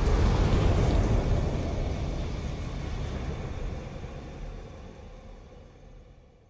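Sound effect of an animated logo intro: a deep rumble with a hiss on top, like a fiery explosion, fading steadily away.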